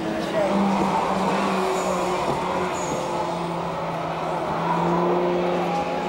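Ford saloon car's engine running steadily as it drives through a corner on a race circuit.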